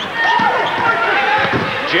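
A basketball being dribbled on a hardwood court, with sneakers squeaking on the floor in short arching chirps during live game play.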